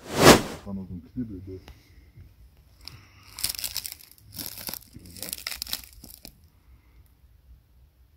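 Rustling, crinkling handling noises in three bursts between about three and six seconds in, after a short loud voice-like sound at the very start.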